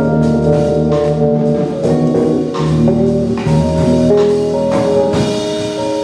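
Small jazz combo playing live: drum kit, keyboard and electric guitar over a steady bass line, with held chords and notes.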